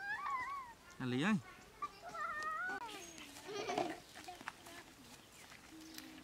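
Baby macaque giving thin, high, wavering squeaks, once near the start and again about two seconds in. A person's voice calls out about a second in.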